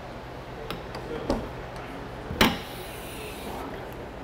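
A few light clicks and knocks, then one sharper, louder knock a little past halfway, over a low steady hum.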